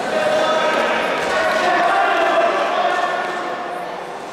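Indistinct voices echoing in a large sports hall.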